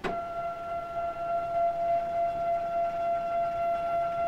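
Steady whine of the motorised stage drive in a PerkinElmer TAMS accessory on a Lambda 1050 spectrophotometer. The whine starts abruptly and holds one pitch as the stage moves to the next measurement position.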